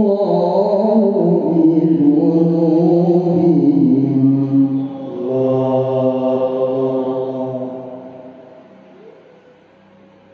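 A man chanting the Qur'an in the melodic qiro'ah (tilawah) style, holding long, ornamented notes. He sings two phrases, and the second dies away about eight seconds in.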